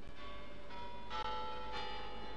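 Bells chiming: a few notes struck one after another, each ringing on under the next.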